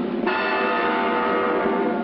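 A ringing, bell-like tone with many overtones in a cartoon soundtrack. It comes in suddenly about a quarter second in and holds steady.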